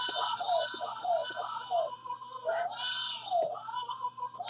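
Drum-kit samples played from MPC pads: a short pitched sound that rises and falls, repeated about twice a second, some hits cut short and some held longer as pads are pressed and released.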